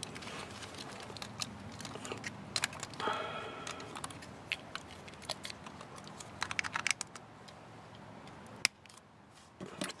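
Hard plastic toy robot parts being handled and fitted together: scattered irregular clicks and light rattles.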